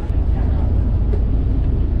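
Steady low rumble of a fishing boat's twin engines running.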